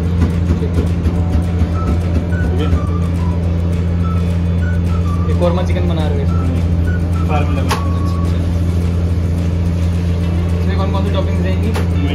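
A steady low machine hum runs throughout, with faint voices in the background around the middle.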